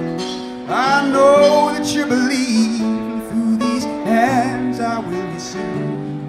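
Live acoustic folk band playing: strummed acoustic guitar with banjo and accordion, and a voice singing long, wavering notes.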